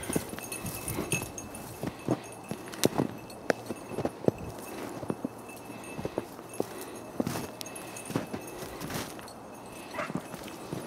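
Footsteps crunching in snow and dry brush, with twigs snapping and scraping in an uneven series of sharp clicks as someone walks through the undergrowth.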